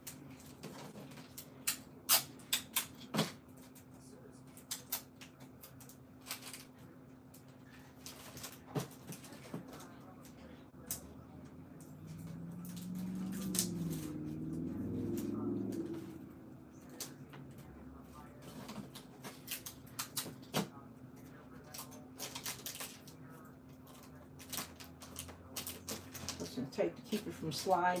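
Scattered clicks and crinkles of boxed toys and packing tape being handled as two toy sets are taped together in a plastic tub. A faint steady hum runs underneath, and about halfway through there is a louder low stretch lasting a few seconds.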